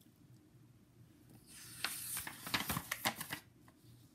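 A picture book's page being turned by hand: a paper rustle of about two seconds with several crisp snaps, starting about a second and a half in.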